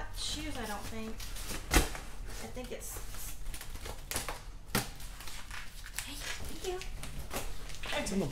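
Cardboard box being torn open by hand, its taped flaps ripping and rustling, with a sharp crack about two seconds in and another near five seconds.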